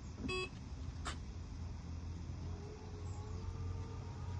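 Tesla Model 3 power trunk closing on command from a phone: a short beep about a third of a second in, a click about a second in, then a faint steady motor whine from the lid's strut motors as the lid lowers.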